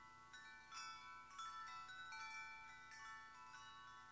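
Faint chiming: many high, bell-like notes struck a few at a time and left ringing over each other, the quiet tail end of the recording.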